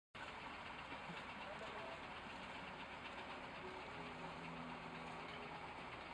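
Fire truck engine idling steadily.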